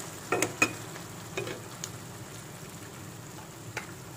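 Thick fish curry gravy sizzling gently in a kadai while a steel spatula stirs it, with a few short clicks of the spatula against the pan, mostly in the first second and once near the end.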